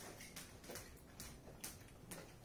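Scissors snipping through thick sweatpant fabric: a series of faint, short snips at uneven spacing, about five in two seconds.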